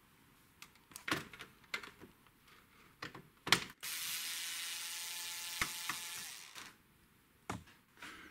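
A few light clicks of handling, then a cordless electric screwdriver runs steadily for about three seconds from around the middle, backing out a screw. A single click follows near the end.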